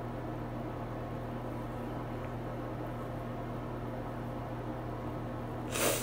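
Steady low hum with a few constant low tones over faint room noise, and a short hiss near the end.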